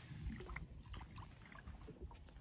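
A largemouth bass being let go into the water at a boat's side: faint small splashes and drips over a low, steady rumble.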